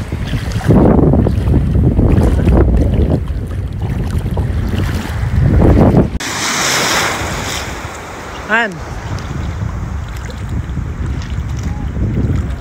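Wind buffeting the microphone in strong gusts over water at the shore. After about six seconds it gives way to a steady hissing wash of lapping water, and a short warbling pitched sound comes about two-thirds of the way through.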